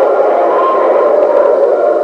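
Church congregation praising aloud together after a call to rejoice: many voices at once, loud and steady.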